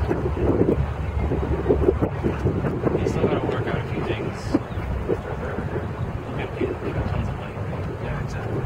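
Wind buffeting the microphone, a steady low rumble, with indistinct voices faintly under it.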